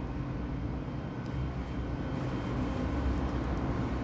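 Steady low background hum in a room, with a few faint mouse clicks near the end.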